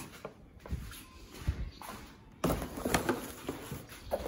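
Cardboard faucet box and its packaging being handled: a few light knocks and bumps, then from about two and a half seconds in, denser rustling and bumping as the box is worked open.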